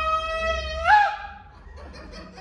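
A man's voice holding one long, steady high note that scoops upward and cuts off about a second in.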